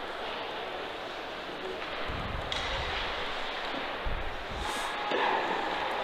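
Ice hockey rink sound during live play: a steady hiss of the arena with two dull low thumps, about two and four seconds in.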